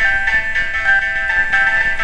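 Electronic chime-like melody: a steady high tone held throughout while shorter notes beneath it step to a new pitch every third to half second. The notes are computer-generated from movement tracked in a live camera picture.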